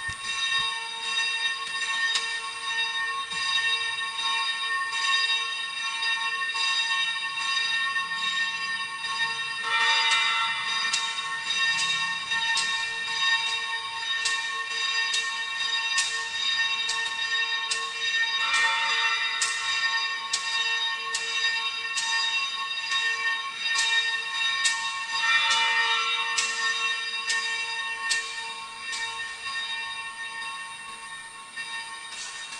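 Altar bells rung over and over as the priest blesses the congregation with the monstrance at Benediction. The ringing goes on without a break, with sharp repeated strikes over lingering high tones and three denser, louder peals about ten, eighteen and twenty-five seconds in.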